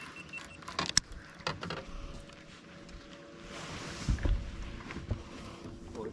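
Scattered clicks and knocks of fishing tackle against a boat, then a hooked fish splashing at the side of the hull about halfway through, followed by a few low thuds, all over a faint steady hum.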